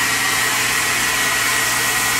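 Handheld hair dryer running steadily: a rush of air with a thin, steady high whine in it.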